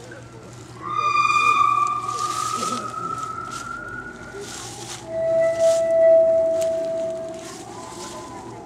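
A person's voice holding two long high-pitched notes: the first starts about a second in and slowly rises over some three seconds, the second is lower and held steady for about two and a half seconds.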